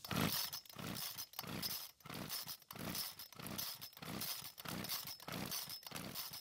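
Old Homelite string trimmer's two-stroke engine cranked over and over with the recoil starter rope, in an even rhythm of about two strokes a second, while a compression tester in the spark plug hole measures compression; the engine does not fire.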